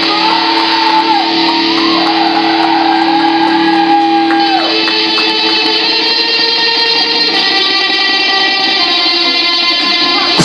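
A rock band playing live, led by electric guitars in a sustained, ringing passage: a steady low note holds underneath while a higher guitar line wavers and bends, then drops away about four and a half seconds in as other sustained notes carry on.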